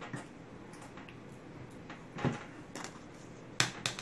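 Quiet handling of a plastic spoon against a Nutribullet cup while thick honey is spooned in: a single light click about two seconds in and a quick cluster of clicks and taps near the end.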